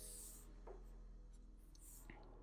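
Faint scratch of a felt-tip marker stroking across paper: one short stroke at the start and another near the end.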